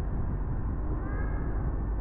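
Steady road and running noise of a car on the move, with one brief high squeak or call that rises and falls in pitch about a second in.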